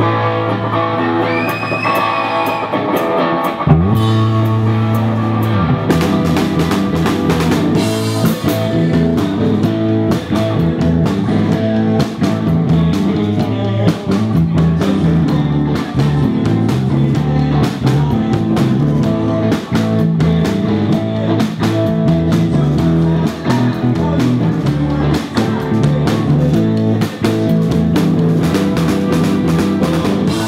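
Live rock band with electric guitars and drum kit. Guitars hold ringing, sliding notes at first; about four seconds in the full band comes in with a steady rock beat that continues.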